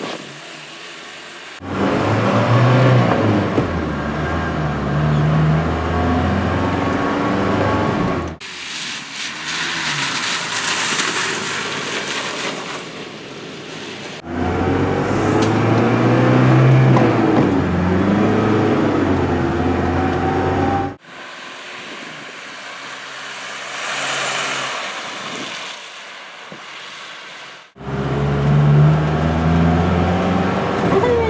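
1987 Mercedes-Benz 240 GD G-Wagen's four-cylinder diesel engine pulling away and accelerating through the gears, its note climbing again and again, in several stretches with quieter road noise between them.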